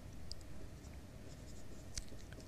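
Faint, sparse scratching of handwriting: a few short strokes of writing on a surface.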